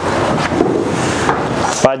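Steady rushing noise on the camera microphone as the camera is carried along. A sharp click comes near the end.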